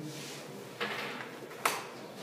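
Handling noise close to the microphone as a person moves past and takes out a small object: a rustle about a second in, then one sharp click near the end.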